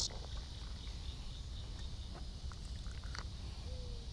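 Quiet outdoor evening background at a pond: a steady low rumble with faint insects chirring, a few faint clicks, and one short falling note near the end.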